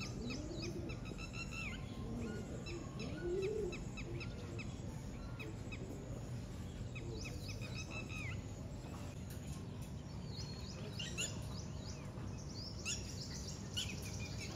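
Several birds chirping and calling, with many short high chirps in quick series throughout. A few lower calls sound in the first four seconds, all over a steady low background rumble.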